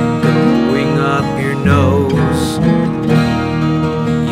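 Several acoustic guitars playing together, strumming chords over low sustained notes.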